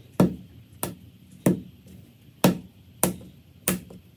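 A hand slapping a lump of soft clay down onto a stone-topped workbench to flatten it, about six sharp smacks at an uneven pace of one every half second to a second.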